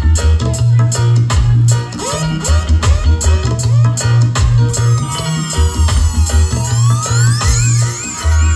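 Roots reggae record played loud through a sound system, with a heavy bass line and steady drum hits. About five seconds in, sweeping tones that rise and fall in pitch join the mix.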